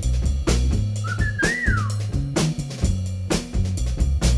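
Northern soul rhythm-section breakdown: a bass line of held low notes comes in over a steady drum beat, answering the call to add a little bass. About a second in, a short high tone slides up and then falls away.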